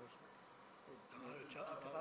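Faint voices in a quiet hall, growing louder about a second in as speech picks up again.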